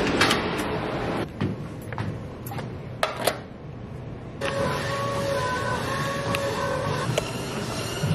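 Door latch clicking and a few knocks, then from about halfway a steady electric whine from a running gym cardio machine.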